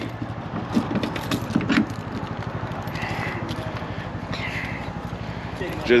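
An engine idling steadily nearby, a low, even pulse under faint distant voices.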